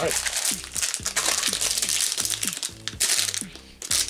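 Plastic snack wrapper crinkling as a packaged gingerbread is handled and turned over in the hands, easing off near the end. Background music plays underneath.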